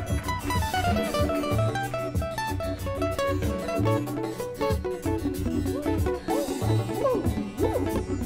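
Guitar solo: quick runs of plucked notes, several falling in pitch, over a repeating bass line and a steady beat.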